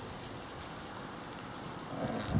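Faint, irregular light ticking over a steady hiss: the salvaged photocopier plastic gear train of a small homemade waterwheel generator turning as the wheel spins.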